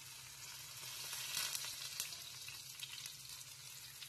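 Chopped garlic sizzling in hot oil with cumin seeds in a nonstick frying pan: a steady soft hiss with scattered small crackles, a little louder between one and two seconds in.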